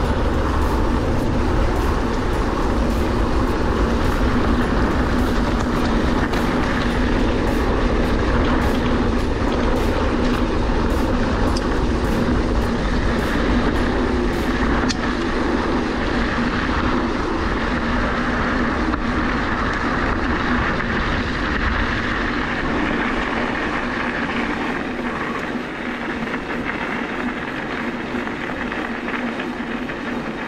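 Norco Fluid full-suspension mountain bike rolling along a dirt trail, heard from the handlebars: steady tyre and riding rumble with frequent rattling clicks over the bumpy first half. From about halfway it runs smoother on a gravel track, a little quieter near the end.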